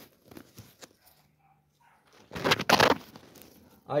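Leaves and nest material rustling against the phone as it is moved in close to a nest, with a few small clicks and one loud brushing rustle about halfway through.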